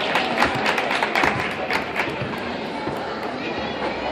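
Gymnasium ambience at a gymnastics meet: music for a floor routine plays over the hall with voices in the background. A run of sharp taps and thuds comes in the first two seconds and grows sparser after.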